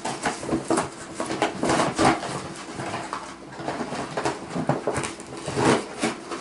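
Brown paper packaging rustling and crinkling as it is pulled open and unwrapped by hand, in an irregular run of crackles.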